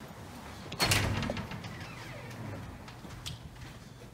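A glass entrance door being pulled open, with one sharp clunk of the door about a second in, followed by a low steady hum of the room.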